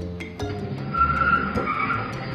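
A pickup truck's tyres squeal in a high whine for about a second, starting about a second in, over background music with a steady beat.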